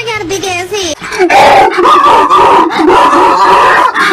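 A human voice wails wordlessly, its pitch sliding up and down, then about a second in breaks into a much louder, harsh, distorted yell.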